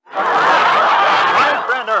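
Studio audience laughing, many voices at once, starting suddenly and loud, then thinning near the end as a single announcer's voice comes in.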